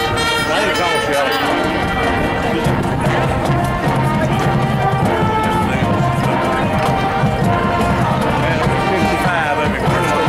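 High school marching band playing on the field: brass and woodwinds with drums and mallet percussion, with a low sustained note coming in about three seconds in.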